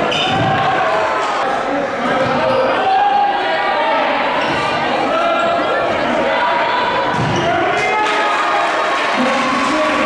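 Live gym sound of a high school basketball game: a basketball bouncing on the hardwood court amid the shouting voices of players and spectators in a large gymnasium.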